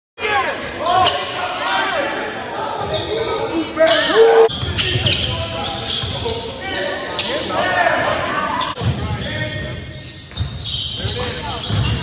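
Basketball game audio in a gym: a ball bouncing on the hardwood court and players' voices calling out, echoing in the large hall.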